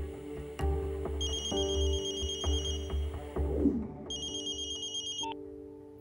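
Film score with a low droning chord and pulsing beat, over which an electronic telephone ringer warbles in two bursts, the first about a second in and running a couple of seconds, the second shorter, near the end.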